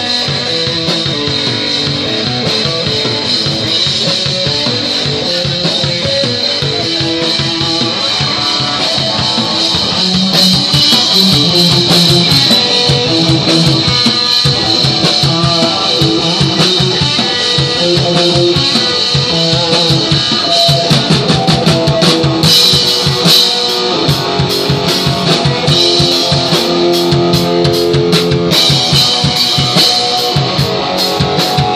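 Live rock band playing the instrumental opening of a song: electric guitar through a small amp with a drum kit. It gets louder about ten seconds in, with heavier cymbal and drum hits in the second half.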